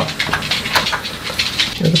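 Water at a rolling boil in a frying pan, blanching minari: a steady bubbling hiss with small scattered pops. A voice starts speaking at the very end.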